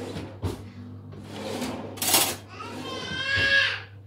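Metal fork and cake server clinking on a ceramic plate as a slice of moist cake is cut, with sharp clinks about half a second and two seconds in. In the last second and a half a child's high-pitched voice calls out.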